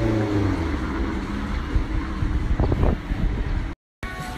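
Road traffic rumbling steadily, with a passing engine's note dying away in the first moments. The sound cuts off suddenly just before the end.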